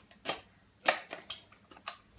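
Tin Hoover Mothimizer attachment clicking and tapping against the metal outlet of a Hoover 700 vacuum as it is pushed into place: about four short metallic clicks over two seconds.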